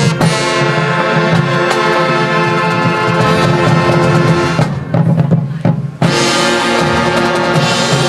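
Marching band with drumline playing: brass and woodwinds hold loud sustained chords over drums. About five seconds in the sound briefly thins to low notes and a few hits, then the full band comes back in loud.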